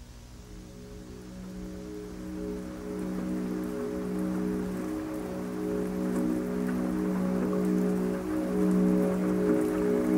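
Ambient synth pad chords fading in, held tones that swell steadily louder, over a light patter of rain.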